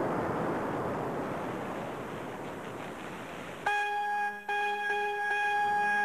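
A steady rushing noise fades. About three and a half seconds in, a long, held horn-like note starts abruptly, breaks off briefly and holds on: the opening of a slow bugle call sounded for the moment of silence.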